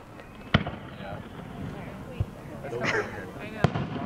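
Aerial firework shells bursting: a sharp bang about half a second in, a softer one around the middle and another sharp one near the end, with crowd voices in between.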